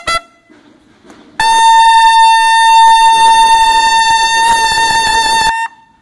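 Two banda de guerra bugles hold one long, loud note in unison for about four seconds, after a clipped note and a pause of about a second; the note cuts off sharply near the end.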